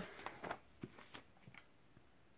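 Faint rustling of paper being handled, with a few soft clicks, dying away about a second and a half in.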